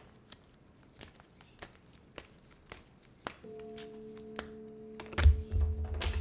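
Oracle cards being shuffled by hand, a run of light clicks and taps. About three and a half seconds in a soft held chord of background music comes in. Near the end the deck is knocked upright on the table with a few low thumps.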